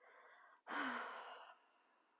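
A woman breathing: a quiet inhale, then an audible sigh starting about two-thirds of a second in and fading away over the next second.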